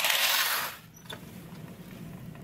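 A short rush of curtain fabric rustling as window curtains are pushed aside, lasting under a second, then quiet room tone with a faint low hum.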